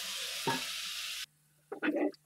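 Pull-down kitchen faucet sprayer hissing as water rinses a white plastic fermenting bucket, cutting off suddenly about a second in. It is followed near the end by a few knocks of the plastic bucket being handled in the sink.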